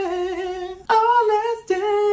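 A man singing long, drawn-out notes in a high voice, rock-and-roll style: one note held, a short break about halfway, then a second note that slides down into a third, lower held note near the end.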